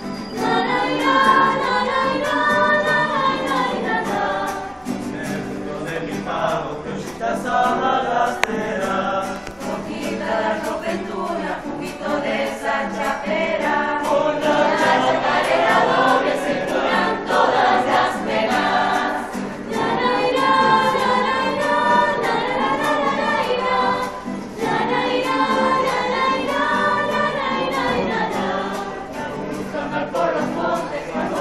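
A mixed choir of young men and women singing a song together, accompanied by an acoustic guitar.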